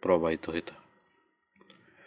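A man's voice ends a short phrase of Bengali narration, then a pause broken by a faint click about a second in and a sharper, brief click a little after one and a half seconds.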